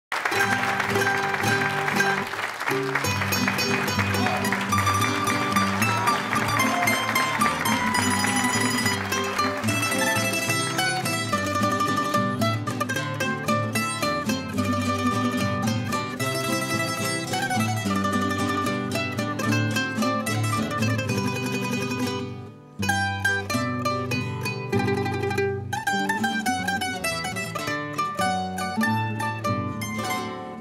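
A rondalla of Spanish plucked strings, bandurria-type instruments and guitars, playing the instrumental opening of an Aragonese jota, with a short break about three-quarters of the way through.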